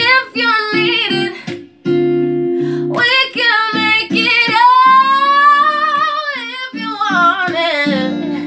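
A woman's voice sings a slow, soulful melody over acoustic guitar accompaniment, holding one long note about halfway through.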